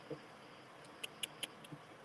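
Faint room tone with a soft thump just after the start, then four short, faint clicks in quick succession about a second in.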